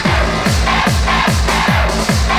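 Hardstyle dance music played loud on a club sound system: a distorted kick drum that drops in pitch on every beat, about 2.4 a second, under a pulsing high synth line.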